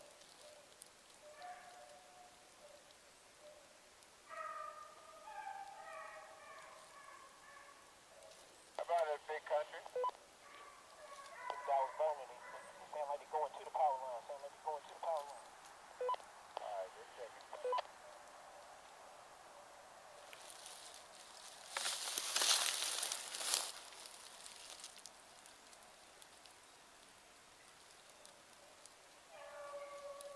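A pack of hunting dogs baying on a chase, in repeated drawn-out calls, some wavering up and down in pitch, through the first half. About two-thirds of the way in comes a short loud burst of hiss.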